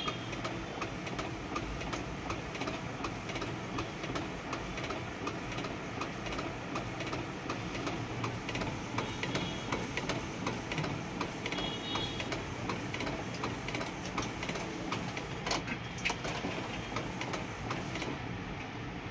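Epson L8050 inkjet printer printing on a thick PVC card fed directly without a tray. The print head carriage shuttles back and forth as the card steps through, a steady mechanical whirring with fine ticking.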